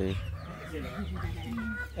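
A flock of chickens clucking softly, in short pitched calls.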